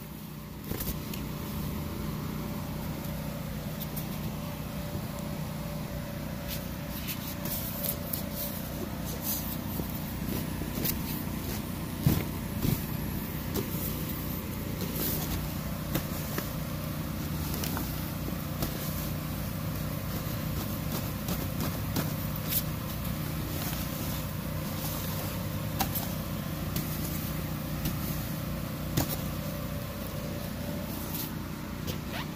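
An electric blower motor running steadily with a low hum, keeping an inflatable water slide inflated. Over it, a long-handled bristle brush scrubs across the vinyl with scattered scrapes and knocks, one louder knock about twelve seconds in.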